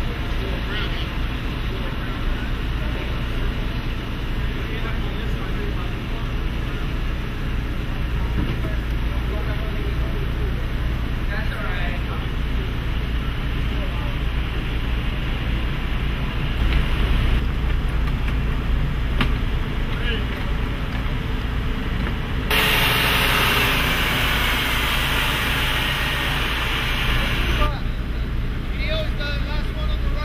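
Semi-truck diesel engine running with a low, steady rumble as the tractor-trailer moves through the lot. Past the middle, a loud hiss cuts in for about five seconds and then stops.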